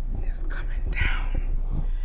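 A person's breathy, whispered sounds without voice, over a steady low hum inside a car.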